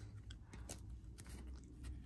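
Faint handling of trading cards: a few light clicks and rustles as the cards are slid and shifted in the hands, over a low room hum.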